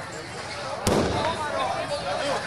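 A single loud firecracker bang going off inside a burning Ravana effigy a little under a second in, over crowd chatter.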